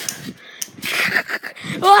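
A person's breathy, noisy exhalations, then a loud vocal shout starting near the end.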